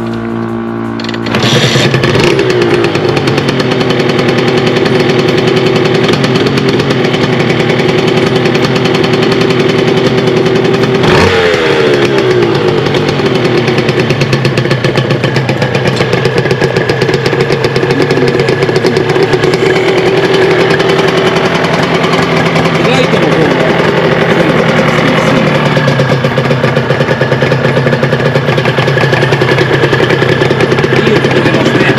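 Honda NSR250R MC18's two-stroke V-twin kick-started from cold, catching about a second in without the choke pulled, then running steadily. There is a short blip of the throttle about eleven seconds in.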